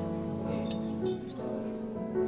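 Soft background music with a few sharp clinks near the middle: a knife and fork touching a porcelain plate while a dish is being cut.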